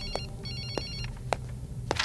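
Electronic telephone ringing in two short trilling bursts, the second stopping about a second in, with footsteps about twice a second.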